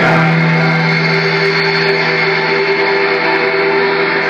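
Live band in a sustained drone passage: electric guitar through effects and electronics holding steady, echoing tones, with a low held note coming in at the start.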